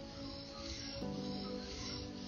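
Japanese sumi ink stick rubbed in circles on a wet stone inkstone: a soft, gritty swishing that swells and fades with each stroke as ink is ground. Background music with sustained chords plays over it.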